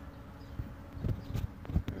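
A few dull knocks and thumps close to the microphone, about four in just over a second: handling noise as the phone camera is set down and adjusted, with a faint steady hum underneath.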